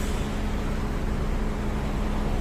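Car cabin noise heard from inside a moving car: a steady low rumble of engine and road, with a steady low hum underneath.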